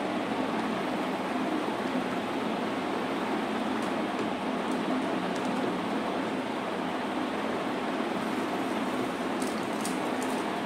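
Steady rushing noise with a faint low hum, like a fan or air conditioner, with a few faint light clicks.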